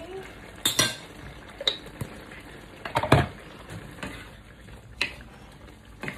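A wooden spoon and metal fork stirring a thick stew in a wok. Several knocks and scrapes against the pan, the loudest about three seconds in, over a steady low hiss from the simmering pot.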